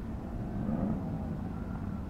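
Steady low outdoor rumble, with a faint, distant engine hum that swells about half a second in and fades near the end.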